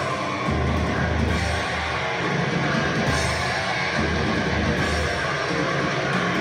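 Heavy metal band playing live: distorted electric guitars and drum kit, with heavy low chords that stop and restart in short blocks.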